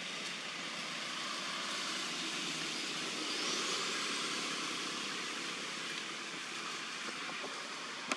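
Steady rushing outdoor background noise that swells gently in the middle and eases off again, with a faint rising whine near the middle.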